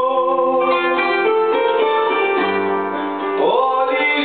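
Live Greek ballad played on kanonaki (qanun), bouzouki and digital piano, with the plucked runs of the kanonaki and bouzouki prominent and a man singing over them.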